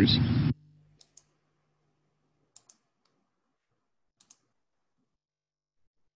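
Near silence broken by faint, quick double clicks from a computer, three pairs about a second and a half apart, after a voice ends in the first half second.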